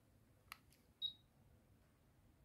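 Near silence, broken by a faint click and then a single short, high electronic beep about a second in.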